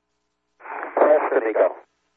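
Only speech: a short man's call, "Press to MECO", over a narrow-band air-to-ground radio link, starting about half a second in after dead silence.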